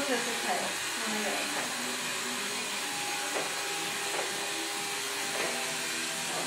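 An electric salon hair tool running steadily through the whole stretch, an even whirring rush with faint steady tones in it, with faint voices underneath.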